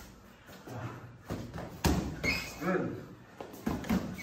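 Boxing-glove punches landing in a gym hall: a sharp hit about two seconds in and another just before the end, with a voice between them.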